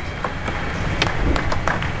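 A table tennis ball clicking sharply off bats and table, an irregular string of hits and bounces, over the steady rumble of an arena crowd.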